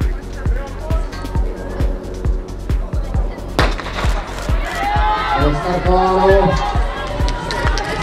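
Music with a steady beat, and about three and a half seconds in a single sharp starting-pistol shot, the start signal for a sprint race. Raised voices follow after the shot.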